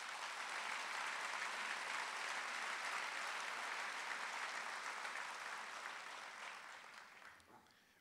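Audience applauding, building quickly, holding for a few seconds, then fading away near the end.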